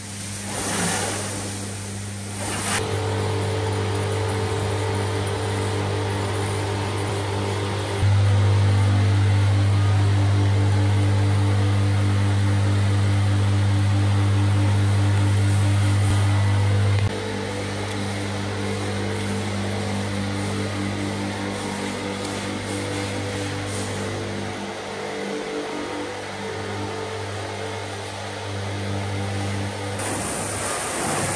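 Water spray hissing for the first few seconds, then a steady low machine hum that holds the same pitch throughout. The hum jumps louder about 8 seconds in and drops back suddenly about 17 seconds in.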